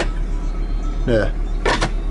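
VW T4's five-cylinder diesel idling, a steady low hum heard inside the cab. A brief click or knock near the end comes from something being handled at the dashboard.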